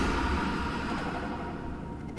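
Low drone from the opening of a horror film trailer, fading steadily away.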